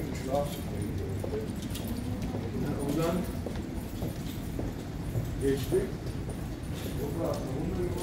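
Airport terminal ambience: footsteps clicking on a hard stone floor and scattered voices of travellers in a large hall.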